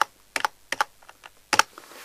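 Computer keys tapped about half a dozen times, in light, irregularly spaced clicks, stepping a chess program's board forward move by move.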